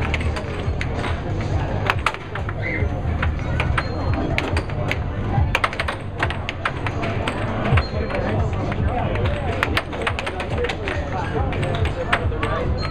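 Air hockey puck cracking against the mallets and the table's side rails in fast play, many sharp clicks at irregular intervals, over the steady low hum of the table's air blower.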